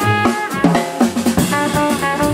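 Live jazz: a trumpet playing a phrase of notes over a busy drum kit and an upright bass. The drums lead through most of the stretch, and the trumpet comes back in near the end.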